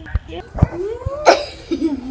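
A person saying "yeah", then a short, loud cough-like burst just after halfway, with a few low knocks from the camera being handled early on.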